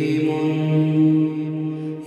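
A boy's voice chanting a long, steady held note through a handheld megaphone, over a low steady drone; the note breaks off near the end.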